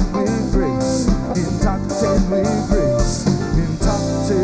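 A live reggae band playing, with electric guitars, bass, keyboards and drums keeping a steady beat.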